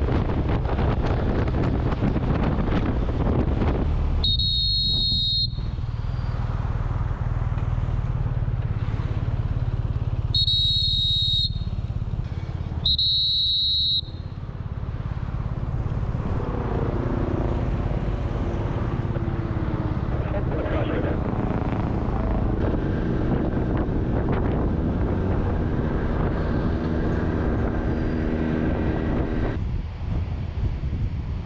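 A motorcycle in motion, with wind rushing over the microphone and the engine running underneath. Three short, high whistle tones of about a second each break in, and several steady tones join in the second half.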